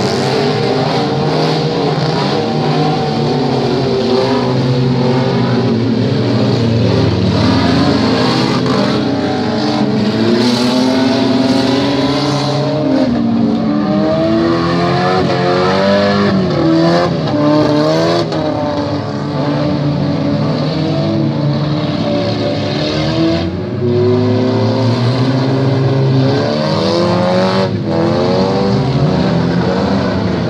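Several demolition-derby cars' engines running and revving together, their pitches rising and falling over one another as the cars accelerate and slow in the arena.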